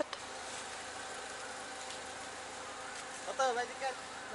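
Car idling at a standstill: a steady hum with a faint, even whine running through it. A voice speaks briefly near the end.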